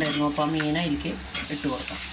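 Frying sizzle from spiced onion masala in a steel pan as raw fish pieces go in, growing louder in the second half. A woman's voice is heard over it in the first second or so.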